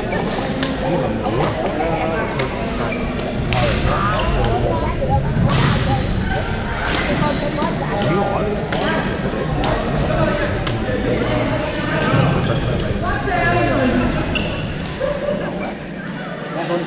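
Badminton rackets hitting shuttlecocks on several courts, a steady scatter of sharp cracks through the whole stretch, among players' voices, all echoing in a large gym hall.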